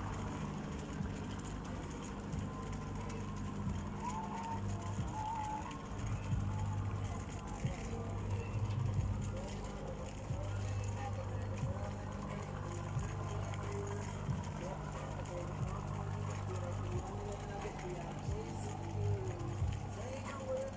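Quiet outdoor waterfront ambience: a steady low hum with faint, distant voices and faint music.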